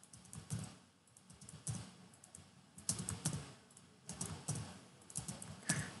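Computer keyboard keys clicking in short runs of taps, about one run a second, as a line of text is pasted and Enter is pressed over and over.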